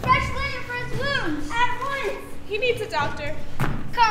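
Children's high-pitched voices on stage, drawn out and rising and falling in pitch, with no clear words.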